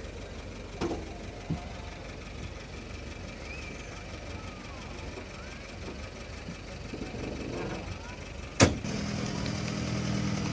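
Open-top jeep's engine running at low revs, a steady low rumble, with one sharp knock near the end.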